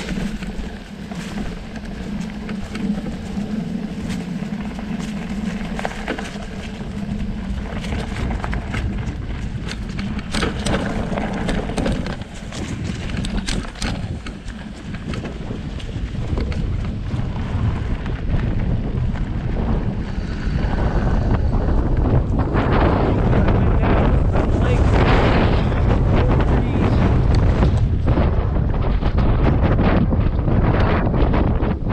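Wind buffeting the camera microphone over the rolling noise of a mountain bike's knobby fat tyres on a leaf-strewn dirt trail and then grass. The wind rumble grows louder in the last third.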